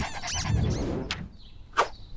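A few quick high-pitched cartoon squeaks fading away in the first half-second, then two brief sharp sounds, one about a second in and one near the end.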